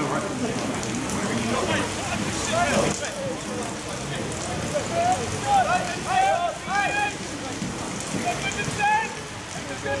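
Steady rain falling on an open football ground, with voices calling out across the pitch, most of them in a cluster of short shouts about five to seven seconds in.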